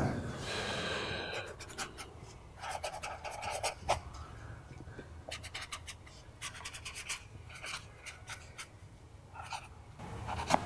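A pen writing an autograph on a T-shirt: short scratchy strokes in several runs with pauses between, the busiest runs about two and a half and six and a half seconds in.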